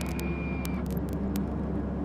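Steady rumble of a running car, with a faint high tone that fades out about a second in.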